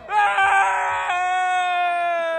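A person's long, high-pitched scream, held on one steady pitch, rougher and mixed with other voices for about the first second.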